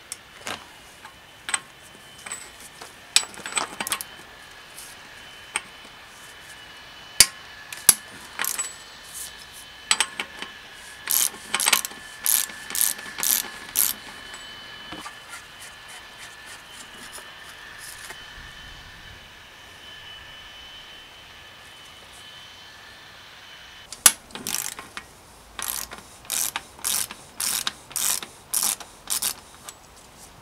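A threaded bottom bracket being unscrewed from a steel bike frame with a ratcheting tool. Scattered single clicks give way to runs of even clicks, about two a second, near the middle and again near the end.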